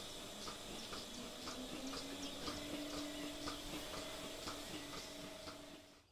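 DelaVal milking robot running: its pulsators tick evenly about twice a second. A steady machine hum comes in about two seconds in.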